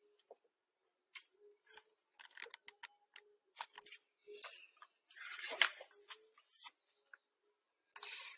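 Page of a hardcover picture book being turned and the book handled: scattered light paper clicks and crinkles, with a longer, louder page rustle about five to six seconds in.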